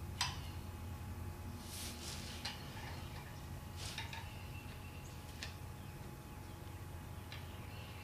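Long screwdriver clicking and clinking against metal down in the distributor drive-gear bore of an air-cooled VW Type 1 engine case as the drive-gear shims are centered: a handful of scattered sharp clicks over a steady low hum.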